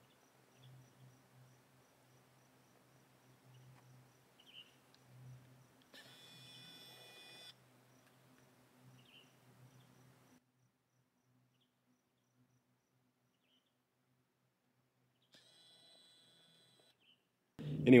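Faint outdoor insect sounds: steady soft ticking chirps, with a short buzz about six seconds in and a weaker one near the end.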